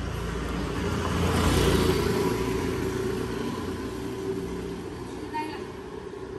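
A motor vehicle passing: a rumbling road noise that swells to a peak about two seconds in, then fades away.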